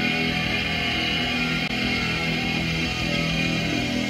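Rock band music with electric guitar, chords held and ringing steadily, no singing.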